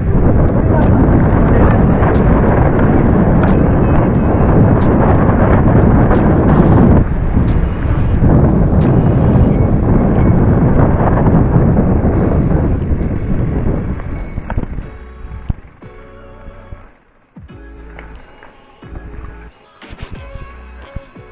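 Wind buffeting a mountain bike's action-camera microphone and knobby tyres rolling over a rough dirt trail, with sharp rattles and clicks from the bike on the bumps during a fast descent. The noise drops off sharply about 15 seconds in as the bike slows.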